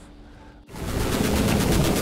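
Closing-logo sound effect: a loud, rapid rattle that starts abruptly about two-thirds of a second in, after a brief quieter moment.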